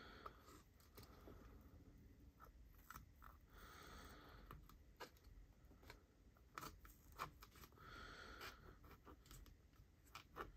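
Small scissors snipping through a tan strap, very quietly: a dozen or so scattered faint snips and clicks rather than a steady cut.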